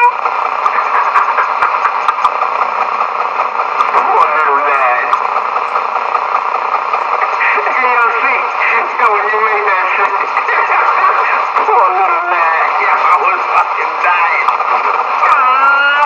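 Several indistinct voices talking over one another, with a thin, band-limited sound and no clear words.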